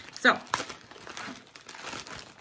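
Parcel packaging crinkling and rustling in irregular crackles as it is handled and opened.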